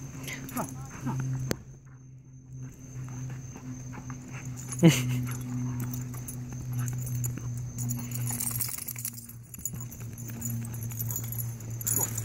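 Two dogs play-wrestling with steady low growling throughout, and a short cry that falls in pitch about five seconds in.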